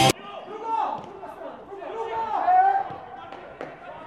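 Voices shouting across a football pitch, with two loud calls about a second and two and a half seconds in over faint background noise, and one sharp knock near the end.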